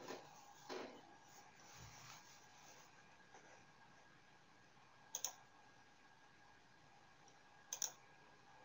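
Near silence with room tone and a few faint, sharp clicks: a single one just under a second in, then a quick pair about five seconds in and another pair near the end.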